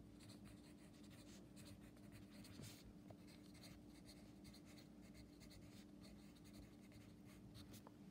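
Pencil writing on a paper workbook page: faint, irregular scratching strokes over a steady low hum.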